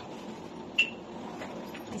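Soft-sided fabric suitcase being handled and tipped over to be laid down, with one short, sharp click a little under a second in.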